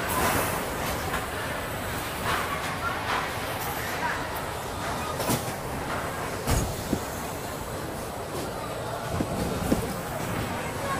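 Spinning coaster car rolling slowly along its track through the station, a steady rumble with scattered knocks and clacks as it inches forward in the queue of cars.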